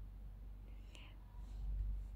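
A faint whispered voice, brief, about a second in, over a low steady hum.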